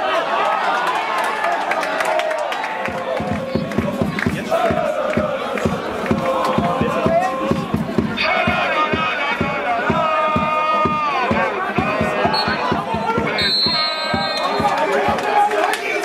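Players and sideline spectators shouting and calling out during a youth football match, many voices overlapping, with several louder, higher shouts from about halfway through.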